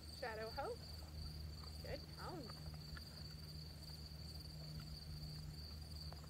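Crickets chirping in one steady, continuous high-pitched trill, over a low steady hum.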